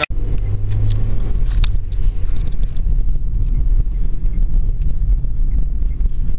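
Steady low rumble of a car running, heard from inside the cabin. It starts abruptly just after the beginning.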